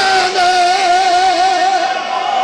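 A man's voice holding one long sung note with a wavering vibrato, amplified through a microphone and loudspeakers.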